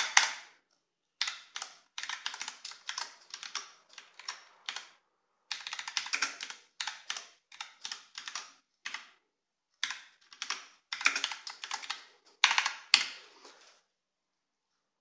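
Computer keyboard being typed on one-handed: runs of key clicks in short bursts, broken by brief pauses, stopping just before the end.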